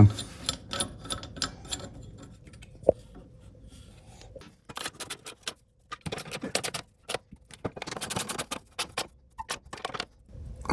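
Small hand ratchet clicking in quick runs as bolts on a gearbox mount are tightened, with scattered knocks of bolts and tools being handled and one short metallic clink about three seconds in.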